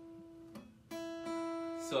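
Acoustic guitar being tuned between songs: a single string ringing, cut off about half a second in, then plucked again at the same pitch just under a second in and left to ring.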